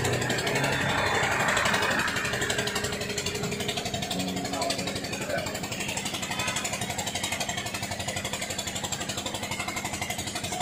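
A small engine running steadily with a rapid, even pulse.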